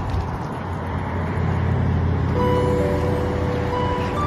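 Steady road-traffic rumble from passing cars and trucks. Background music notes come back in about halfway through.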